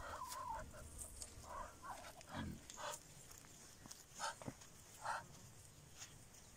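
Muscovy ducks making a series of short, soft calls, faint and spread through the few seconds.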